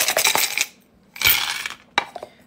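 A handful of small bones, shells, stones and metal charms clattering onto a wooden tray as they are cast for a bone-throwing divination reading. There are two bursts of rattling clicks, one at the start and a second a little past halfway.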